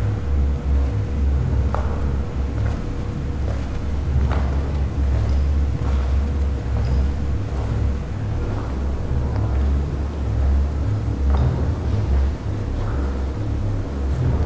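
A loud, steady low rumble, with a faint held tone above it through the first part and a few faint taps scattered through it.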